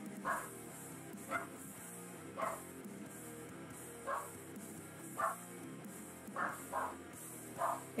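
A dog barking, about eight single barks spaced a second or so apart, over background music.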